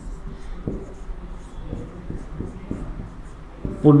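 Marker pen writing on a whiteboard: a run of short, irregular strokes as words are written by hand.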